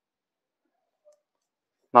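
Near silence, then a voice starts speaking right at the end.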